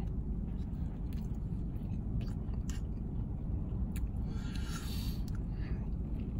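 A man chewing a mouthful of food with his mouth closed, with a few faint clicks and a soft breathy exhale about four and a half seconds in, over a steady low rumble in a car cabin.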